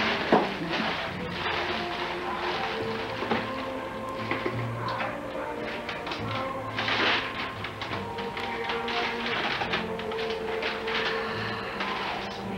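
Music playing in the background, with paper and tissue rustling and a cardboard gift box being opened and handled, making scattered light taps. A louder burst of rustling comes about seven seconds in.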